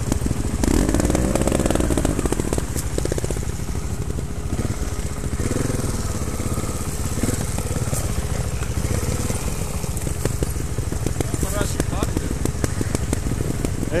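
Trials motorcycle engine running at low revs with an uneven, rapid popping, rising briefly in pitch about a second in and again around the middle, as the bike is eased down a steep slope.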